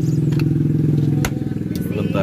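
Car engine idling steadily, heard from inside the car, with a sharp click a little past halfway.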